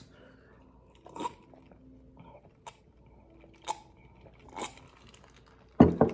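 A person drinking lemonade from a plastic cup: four faint swallows, about a second apart, then a short, louder mouth sound near the end.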